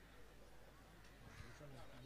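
Near silence, with faint distant voices calling.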